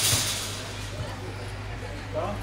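Outdoor match ambience: faint, scattered voices of players and onlookers over a steady low hum. A brief hissing rush at the very start fades within about half a second.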